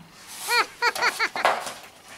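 A woman's playful laugh, a run of short, high-pitched 'ha' syllables that fades out. It acts out a story character's laughter during a read-aloud.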